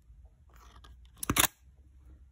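Camera memory-card slot door being opened, with light handling clicks and then a sharp plastic click about a second and a quarter in as the latch lets go.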